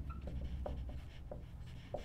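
Marker pen writing on a whiteboard: the felt tip drawing strokes, with a few short faint squeaks about every half second.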